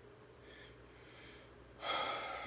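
A man breathing out audibly through the mouth, starting near the end, after a quiet stretch.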